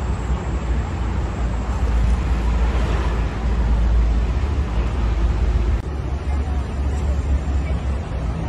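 Outdoor wind and traffic noise: a steady low rumble of wind buffeting the microphone under a wash of street traffic. The noise changes abruptly about six seconds in.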